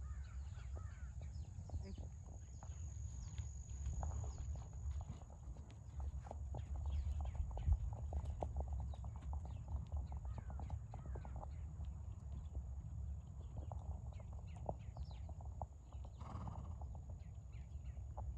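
Racehorse walking on a dirt training track, its hoofbeats coming as a run of soft, evenly spaced steps, clearest in the middle stretch, over a steady low rumble and birds chirping.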